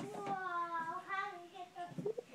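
A toddler's voice singing out in drawn-out notes: one long held note, then a second wavering one, ending just before the close.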